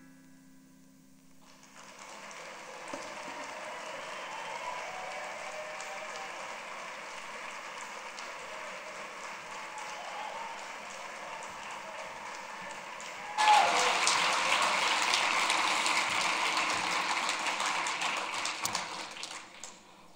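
Audience applauding, a steady crackle of many hands. It gets suddenly much louder about two-thirds of the way through, then dies away near the end.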